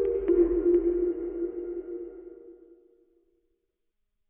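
Closing electronic music sting: a pair of held low synth tones with a few sharp clicks in the first second, fading out to silence about three seconds in.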